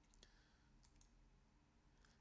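Near silence: low room tone with a few faint clicks in the first second.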